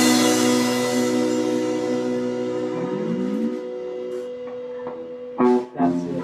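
Electric guitars' closing chord ringing out and slowly fading after the final hit, with a low note sliding upward about halfway through. Short louder sounds break in near the end.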